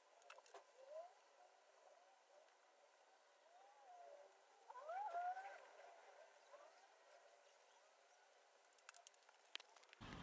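Near silence with faint bird calls: short rising and falling notes, loudest about five seconds in. A few light clicks come near the end.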